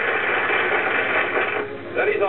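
A burst of hiss-like noise on an old film soundtrack, with no clear pitch, that cuts off about a second and a half in.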